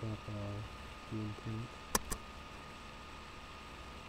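Two sharp clicks about two seconds in, a fifth of a second apart, after a few short phrases from a man's voice. A steady faint hiss with a thin high whine runs underneath.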